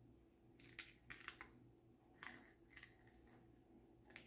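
Masking tape being peeled off watercolour paper: faint crackling tears in a few short runs, the first about half a second in and another just after two seconds.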